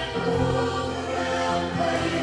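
A small group of young voices singing a worship song together into microphones.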